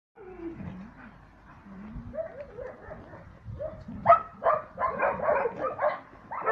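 Wolf whining and yipping: low, falling whines at first, then from about four seconds in a quick run of louder, higher yips and whimpers.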